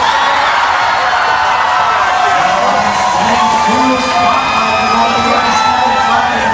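Loud crowd in a large arena cheering and shouting, with voices and music mixed into a steady din.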